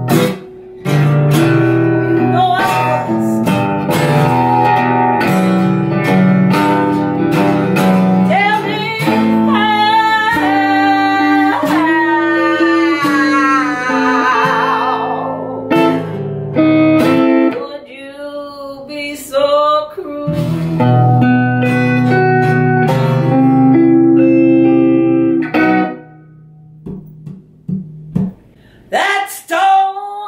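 Electric guitar and acoustic guitar playing an instrumental passage with held, wavering notes and a falling run of notes midway. For the last few seconds the playing thins out to sparse notes and is much quieter.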